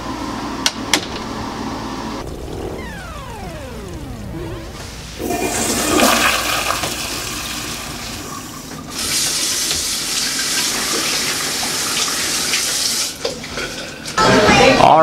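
A toilet flushing, with a loud rushing of water that peaks and fades over a few seconds, followed by a bathroom sink tap running steadily for about four seconds and shut off near the end. Earlier, a falling tone slides down in pitch, and a few sharp clicks sound at the start.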